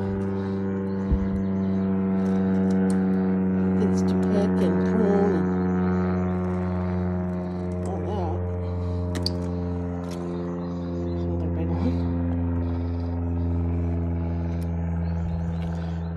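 A steady mechanical drone: a low hum with a stack of overtones, holding one pitch with only a slight shift about ten seconds in. A few brief clicks sound over it.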